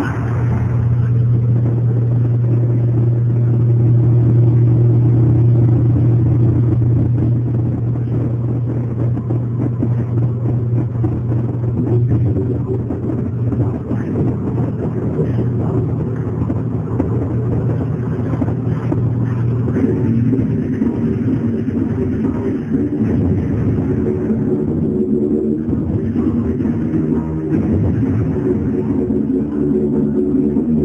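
A loud, steady low drone from the show's sound track over loudspeakers, which gives way about twenty seconds in to a buzzier drone with several higher tones.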